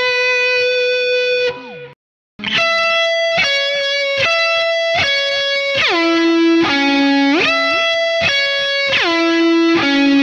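Electric guitar, a Gibson 335-style semi-hollow body, played through a DigiTech Whammy pitch-shift pedal. A held note sinks in pitch and cuts off about two seconds in. Then come quickly repeated picked notes that the pedal drops about an octave and brings back up several times.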